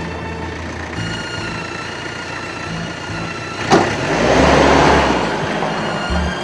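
Sustained background drama score. About two thirds in, a sharp hit and then a loud rushing noise swell for about a second and a half before fading back under the music.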